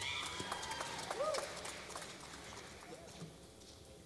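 Quiet concert-hall room noise: scattered small clicks and knocks from the stage and audience, with a short rising-and-falling voice-like sound about a second in, growing quieter toward the end.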